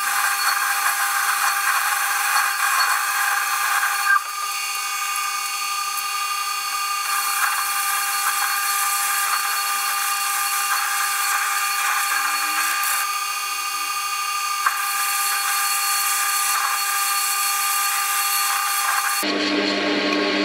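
Warco WM180 mini lathe running under a heavy roughing cut in aluminium, a 1 mm depth of cut taking 2 mm off the diameter: a steady motor whine under the hiss of the insert cutting. The cut is too deep to leave a good finish. The cutting sound shifts in character a few times, then stops abruptly about a second before the end, leaving a lower hum.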